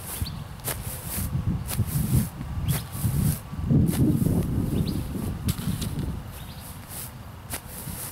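Cleats stepping and scuffing on grass as a player circles his feet around a soccer ball in step-overs: scattered sharp clicks over a low rumble that swells about halfway through.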